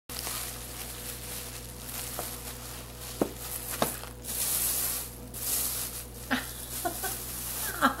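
Plastic wrapping and bubble wrap rustling and crinkling as a glass is unwrapped, with a couple of sharp clicks and louder swells of crinkling partway through.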